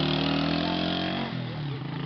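A small motorcycle engine running with a steady low hum. Its pitch sinks slightly and the sound fades away about a second and a half in.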